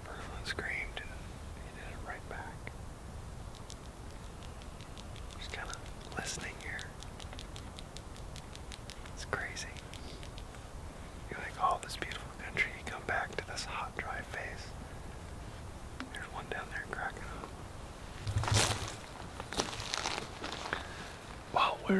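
Hushed, partly whispered talk between people, too quiet for the words to come through. Near the end comes a brief loud rustle with a dull thump.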